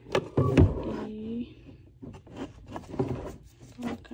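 Small items being knocked and shuffled about on a shelf by hand, with a cluster of sharp knocks in the first second and scattered lighter clicks and rustles after; a short hummed voice sounds about a second in.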